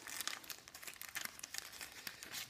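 Light, crackly crinkling from fingers handling a glossy Pokémon trading card, a quick run of faint ticks and crackles.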